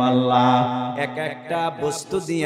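A man's voice chanting a sermon passage in a drawn-out melodic style, holding one long note for about the first second before moving into shorter phrases.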